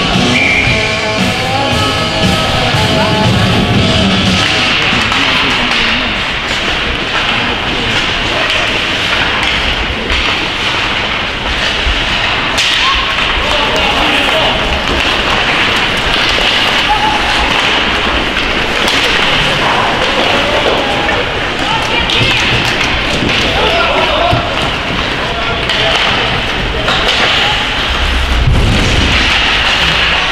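Rink PA rock music with electric guitar for the first few seconds, then the sounds of live youth ice hockey play in an echoing rink: skating and stick-and-puck noise with shouting voices, and a heavy thud near the end.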